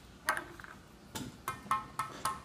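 About five light clicks and clinks of small plastic dropper bottles being handled on a glass tabletop. The later ones ring briefly.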